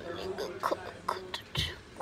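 A person whispering in short, breathy bursts, with a soft bump about one and a half seconds in.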